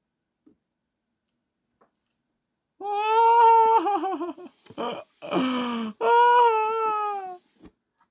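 A man's high-pitched falsetto squeals of laughter, starting about three seconds in: a long held wail, a wavering giggle, then a second long wail that falls away near the end.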